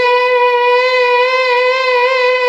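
Nadaswaram, the South Indian double-reed wind instrument, holding one long steady note with a slight waver, part of a slow Madhyamavati raga alapana.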